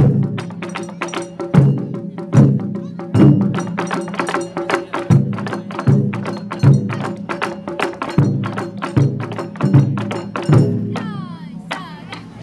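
Taiko ensemble drumming: barrel-shaped chu-daiko struck with wooden bachi give heavy booms about every 0.8 seconds over rapid, sharp strikes on a small rope-tensioned shime-daiko. The drumming stops about eleven seconds in.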